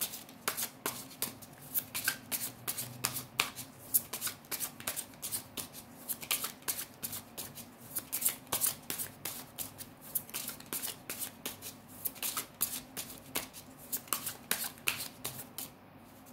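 A deck of cards being shuffled by hand: a long run of quick papery clicks and riffles, several a second, ending just before the close.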